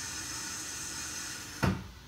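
A soft, steady hiss for about a second and a half, ending in a short sharp sound near the end.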